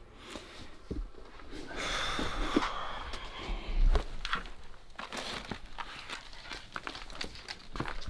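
Footsteps and rustling of paper and clothing in a small, cluttered closet, with scattered clicks and a sharp knock about four seconds in.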